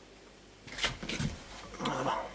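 A white cabinet door being opened and handled: knocks and scraping in two short bursts, the first about a second in and the second near the end.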